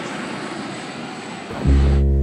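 Steady aircraft engine noise, an even rushing sound with no beat. About one and a half seconds in, music with a heavy bass line cuts in over it.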